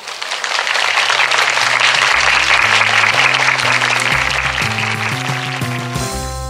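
Applause of many people clapping, loudest in the first seconds, while music with a steady bass line and keyboard notes comes in beneath it and grows until the music takes over near the end.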